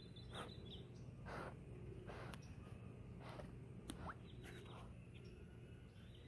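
Faint water swishes from a Malamute dog-paddling in a pool, a soft splash about once a second.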